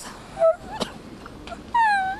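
A woman sobbing: short whimpering cries, then a longer wavering wail near the end.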